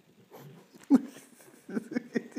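A dog making short whining vocalisations, the loudest a brief one about a second in, as it begs to be let up on the furniture.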